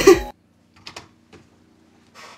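A woman's recorded voice cuts off just after the start. A few faint computer-keyboard clicks follow about a second in, with one more shortly after.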